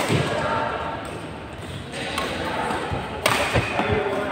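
Badminton play in a large indoor hall: a few sharp hits and thuds, from rackets on shuttlecocks and feet on the court, over voices in the background.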